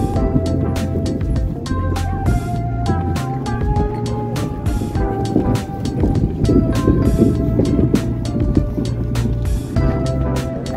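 Background music with a steady beat and sustained melody notes.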